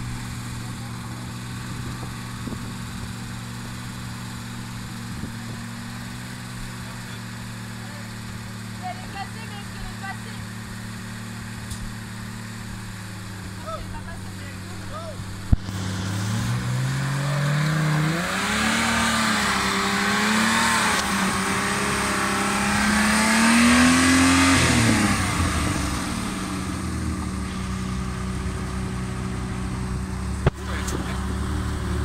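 Unimog 404 S trial truck's engine running at low, steady revs, then a little over halfway through revved up and held high with a wavering pitch as the truck works through the section under load, before dropping back to low revs near the end.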